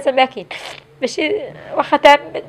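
A woman speaking in Moroccan Arabic while crying, her voice wavering, with a short noisy breath, like a sniffle or sob, about half a second in.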